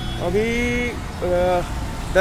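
Steady low rumble of city road traffic and engines, under a man's short spoken phrases.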